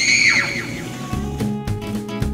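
A loud, high-pitched laugh that falls in pitch and trails off in the first half second. About a second in, music with guitar starts up.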